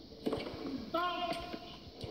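A tennis ball struck on a serve, heard through a television's speaker, with a short voice call about a second later.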